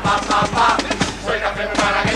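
A Spanish carnival murga of men singing together in chorus, with guitar accompaniment and a steady percussion beat.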